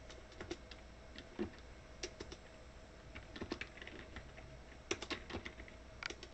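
Keys on a computer keyboard pressed one at a time, in short irregular clusters of clicks as digits are typed in at a command line, over a faint steady hum.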